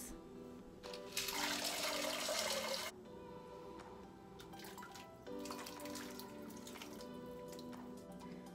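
Background music, over which pinto beans are tipped into the broth in a slow cooker: a splashing, rushing pour lasting under two seconds, about a second in. Later come faint scrapes of a spatula as sautéed vegetables are pushed from a skillet into the pot.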